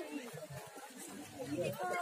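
Faint background chatter of several voices in a short gap in a man's loud speech, which picks up again at the very end.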